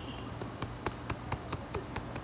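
Several light ticks at uneven spacing, a few a second, over a steady low hum.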